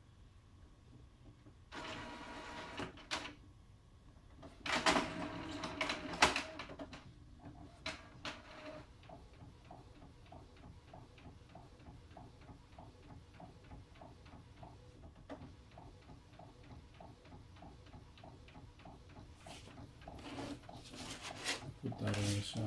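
Epson Stylus Photo P50 inkjet printer starting a photo print: its mechanism runs in two louder bursts in the first seven seconds as the paper is drawn in, then from about nine seconds in the print head shuttles back and forth in a quick, even rhythm.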